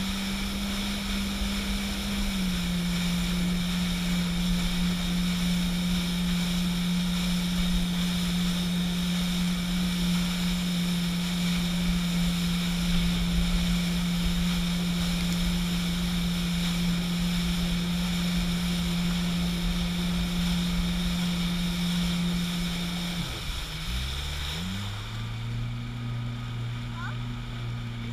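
Jet ski engine running at a steady cruising speed over the rush of water. About 23 seconds in it is throttled back: the pitch drops and it settles into a lower, quieter running tone.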